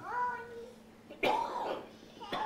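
A person coughs once, about a second in, a short harsh burst, after a brief voiced sound at the start.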